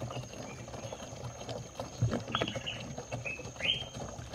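Palm wine being poured from a plastic gallon container into a plastic jerrycan: irregular gurgles and small knocks of liquid and plastic, with a couple of short rising gurgles near the middle and end.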